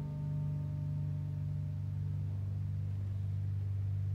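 Last strummed chord of a home-built seven-string acoustic-electric guitar, amplified through a piezo pickup, ringing out: the higher notes fade away while a steady low drone holds at an even level to the end.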